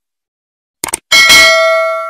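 Subscribe-animation sound effect: a brief clicking just before a second in, then a single bright bell ding that rings on and slowly fades.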